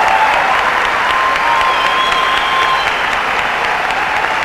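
Large arena audience applauding steadily at the end of a competition routine.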